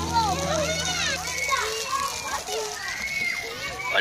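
Many children's voices calling and shouting over one another on a busy playground. A steady low hum runs underneath for the first second and a half.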